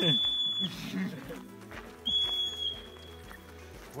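Marmot alarm whistles from the rocky slope: two loud, high, steady whistles about two seconds apart, each lasting just over half a second, the second trailing off.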